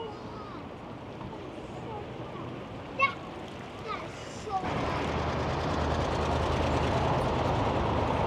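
Quiet outdoor background with a few brief voices. About halfway in, the steady noise of street traffic rises, with a low rumble of cars passing on the road.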